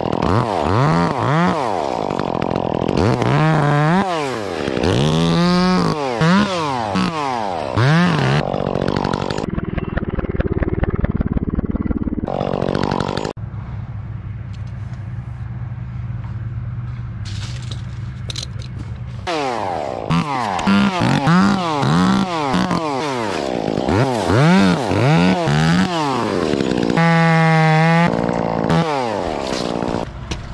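Small two-stroke top-handle chainsaw revving up and falling back over and over, about once a second. For several seconds midway it drops to a steady, quieter idle, then revs up and down again.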